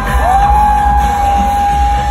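Live pop concert music heard from the audience, with heavy bass under a long high note that glides up just after the start and is then held steady.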